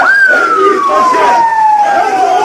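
A siren wailing over a shouting crowd: one long tone that starts high and falls slowly in pitch, following a run of quick rising-and-falling whoops.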